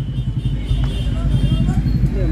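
Steady low rumble of background noise with faint, distant voices under it.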